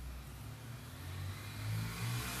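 A low, steady engine-like hum that grows a little louder near the end, with faint stirring of a metal spoon through water and yeast in a plastic bowl.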